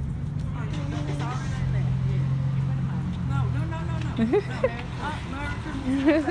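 People talking in the background over a steady low hum from a vehicle running nearby.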